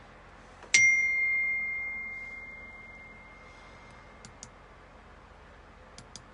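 A single high, bell-like ding that starts suddenly under a second in and rings out, fading away over about two seconds. Two faint quick clicks follow a few seconds later.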